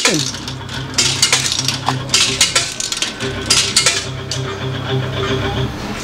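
Coins fed into a slot machine's coin slot, a run of sharp metallic clinks and rattles, over the steady electronic tones of the machines.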